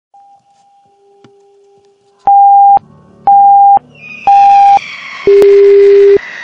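Electronic countdown beeps: three short, evenly spaced high beeps about a second apart, then a longer beep at a lower pitch, counting down to the fireworks launch. A rising hiss swells under the last two beeps.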